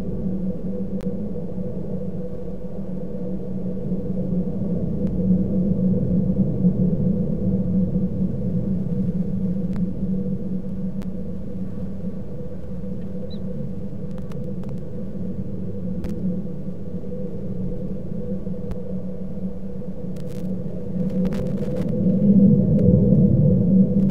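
A steady low hum, with a few faint clicks near the end.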